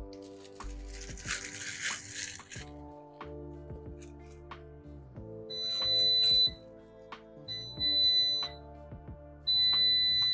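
Plastic ramen noodle wrapper crinkling, then an air fryer's alert beeping: three long, steady, high beeps about two seconds apart. The beeps are the timer signalling that it is time to add the teriyaki sauce to the chicken.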